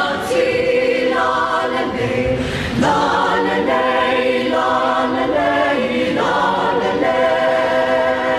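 Mixed choir of women's and men's voices singing a Samoan song in close harmony without instruments, in held chords that change every second or so, with short breaks between phrases.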